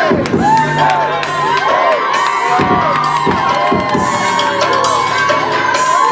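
A packed concert crowd cheering and shouting, many voices overlapping, with music playing underneath.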